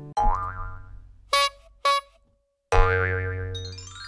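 Cartoon-style outro jingle of sound effects: a springy boing whose pitch wobbles upward and fades, two short pitched toots, a second boing, then a run of chime notes stepping upward near the end.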